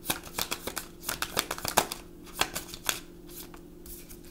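Tarot deck being shuffled by hand: a quick run of soft card slaps and riffles that thins out over the last two seconds.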